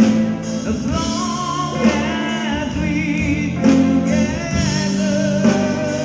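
Live rock band playing: a male lead singer's vocals over electric guitars, bass guitar and drums, the sung notes wavering with vibrato.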